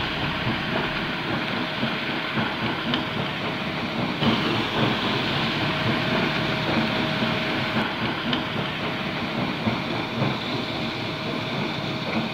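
Shallow river rushing over a rocky bed: a steady, unbroken rush of water noise.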